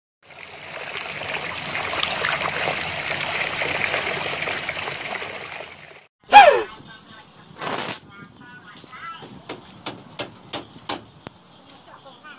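Water trickling and splashing for about six seconds, then a sudden loud swoosh falling in pitch, followed by a series of sharp knocks about half a second apart.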